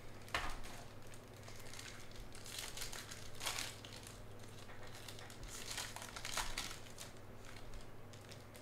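Foil trading-card pack wrapper crinkling in irregular bursts as it is handled and the cards are slid out, loudest about half a second in, around the middle and again near the end.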